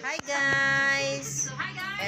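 A high-pitched voice in a long, drawn-out sing-song note, then a short gliding phrase near the end, with a brief click just before the note starts.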